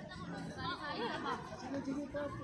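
Overlapping voices of spectators and players chattering and calling out across a football field, with no single clear speaker.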